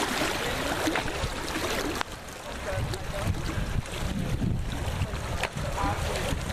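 Pool water splashing and churning from a swimmer's kicking, under a steady low rumble of wind on the microphone. A single sharp click comes about two seconds in.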